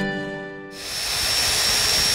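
Acoustic guitar music fading out. About 0.7 s in, a sudden change to a small handheld power sander running with a steady hiss and a thin high whine as it sands a goncalo alves turning held still on a locked lathe.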